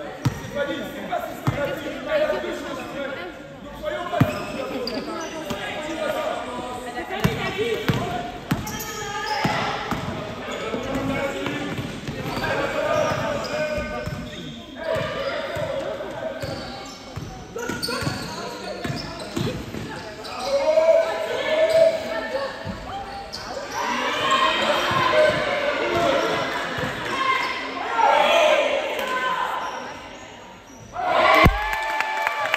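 Basketball bouncing and being dribbled on a hardwood-style gym floor, many short thuds that are densest in the first half. Voices call out over it, louder in the second half, all echoing in a large sports hall.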